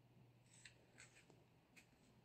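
Near silence, broken by four faint, very short rustles spread over the two seconds.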